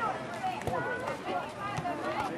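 Faint, indistinct voices of soccer players and sideline spectators calling out over outdoor background noise, with one soft knock about a third of the way in.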